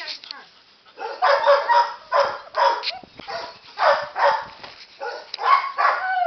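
A Queensland Pointer mix dog barking in a series of about five loud, rough barks, spaced roughly a second apart.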